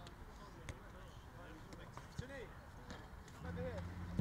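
Faint voices of footballers calling across a training pitch, with a few sharp thuds of footballs being kicked. About three and a half seconds in, a low steady engine hum sets in.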